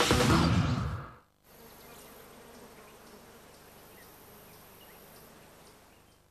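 TV show bumper music fading out in the first second, then a few seconds of faint, steady electrical buzz and hiss in the background of the recorded broadcast before the commercial break.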